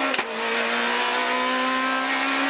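Renault Clio R3 rally car's 2.0-litre four-cylinder engine running at steady, high revs while it drives a gravel stage, heard from inside the cabin over a constant hiss of tyres on gravel. A single brief knock comes just after the start.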